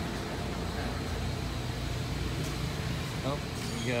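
A steady low rumble of machinery, with short bits of voices about three seconds in and at the very end.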